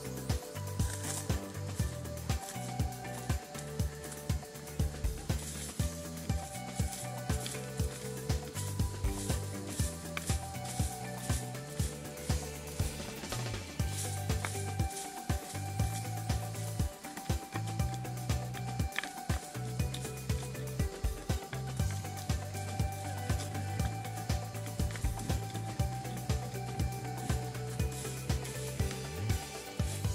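Background music with long held notes, over a wooden stick being scraped again and again across dry dirt and stubble, in quick repeated strokes as the ground is cleared and levelled for a tent.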